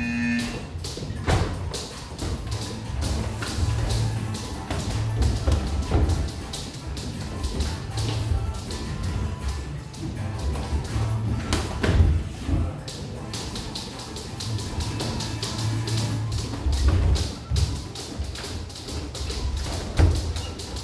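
Boxing gloves landing in sparring, a run of quick taps and thuds on gloves and headgear, with the sharpest hit about twelve seconds in. Music with a steady bass plays underneath.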